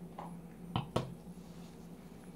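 A wine glass set down on a table: two short knocks about a quarter second apart, the second a sharp click.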